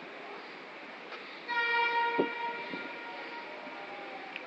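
A train horn sounds one steady note for about a second and a half, the loudest thing here, with a low thud partway through, over steady background noise.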